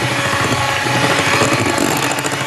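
Electric hand mixer running steadily, its beaters working flour, baking soda and salt into a creamed oil, sugar and egg mixture to bring the cookie dough together.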